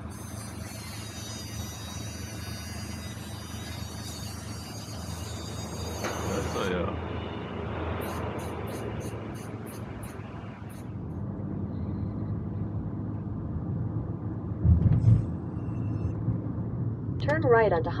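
Road and engine noise inside a moving car. A quick regular ticking runs for a couple of seconds around the middle, a low thump comes later, and a sat-nav voice starts giving directions at the very end.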